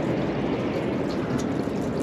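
Black water (toilet waste) pouring in a steady stream out of a motorhome's waste holding tank into a dump-station drain, its valve opened.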